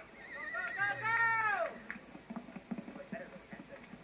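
A horse whinnying once, about a second long: a quavering high start, then a stronger call that falls away in pitch. Heard as played back through a television speaker, followed by a few fainter scattered knocks.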